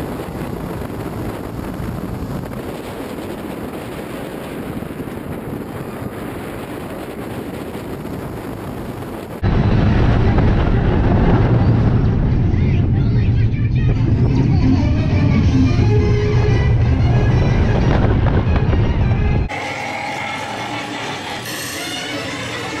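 Steel launched roller coaster (California Screamin', renamed Incredicoaster) heard from a rider's seat: a steady rush of wind and track noise, which jumps suddenly louder with a deep rumble about nine seconds in. Near the end it drops back to a quieter spinning-ride sound with music.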